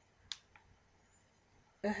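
Two light clicks, the second fainter, from handling a plastic packet of facial wipes, then quiet room tone.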